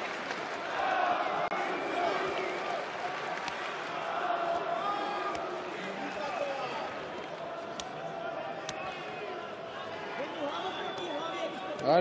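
Arena crowd noise: indistinct overlapping shouts and chatter from spectators around the cage, with a few faint sharp clicks.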